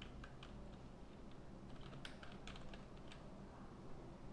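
Faint computer keyboard typing: a quick run of key clicks as a search word is typed in.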